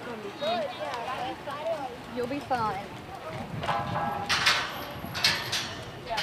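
Indistinct voices of people talking in the background, with several short, sharp noises in the second half.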